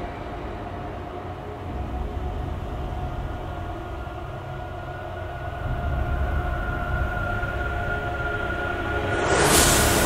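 Cinematic sound design: a steady low rumbling drone with sustained high tones, swelling into a loud whoosh near the end.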